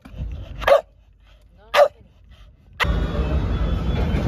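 A dog barks twice, two short loud barks about a second apart. Near the end a steady outdoor background noise takes over.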